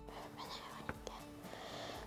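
Faint whispering in a quiet room, with one light click about a second in.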